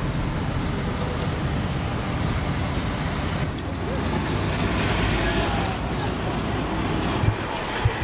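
City street traffic: a steady rumble of cars driving past, swelling slightly around the middle as a vehicle passes close, with a couple of short knocks near the end.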